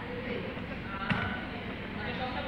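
A woman speaking on a stage, with one sharp thump about a second in.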